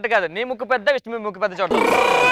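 A young woman's voice into a microphone, calling out in a drawn-out, wordless way with the pitch swooping up and down. Near the end a sudden music sting with held chords cuts in.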